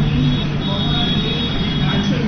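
A woman talking over a steady low background rumble, with a faint steady high whine above it.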